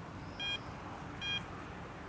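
Two short electronic beeps from a carp bite alarm on the rods, about three quarters of a second apart, each a brief high-pitched bleep.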